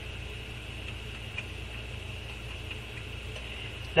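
Steady background noise of the voice recording between spoken passages: a low hum with a faint, even high hiss, unchanging throughout.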